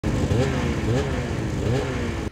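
Several snowmobile engines running together, a steady low mechanical hum with a rising and falling pitch, with voices mixed in.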